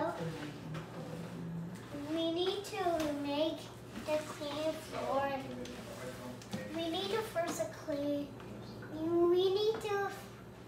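A young girl's voice, vocalizing in long, gliding, sing-song tones without clear words.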